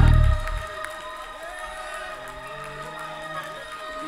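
Church organ: a loud chord that dies away within the first half second, then soft held tones, under a congregation cheering and calling out.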